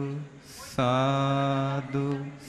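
Male voices chanting Buddhist Pali verses in a slow, level drone on one low pitch. The line breaks off briefly around half a second in, comes back with a hissed "s" sound, and then holds one long note for about a second.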